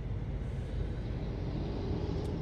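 Steady low rumble inside a car's cabin while the car sits stopped at a red light, its engine idling.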